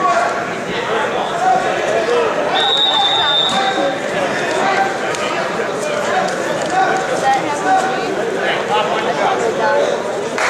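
Many voices chattering at once in a large gym hall, a steady crowd murmur with no single speaker standing out. A thin, steady high tone sounds for about a second and a half, starting about two and a half seconds in.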